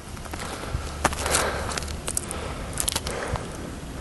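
Irregular scuffing and crackling, most likely footsteps, over a low steady rumble.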